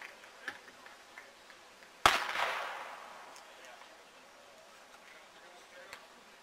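A starter's pistol fires once about two seconds in: a single sharp crack with a ringing tail that fades over about a second, starting a sprint race.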